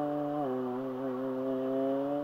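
A buzzy musical note held steadily by a street performer, dropping slightly in pitch about half a second in.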